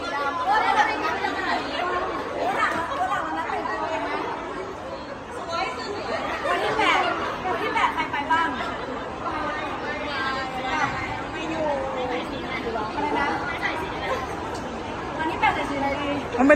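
Chatter of several people talking over one another in a large indoor hall.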